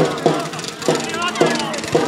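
Children and spectators shouting on a football pitch, over a steady low beat about twice a second.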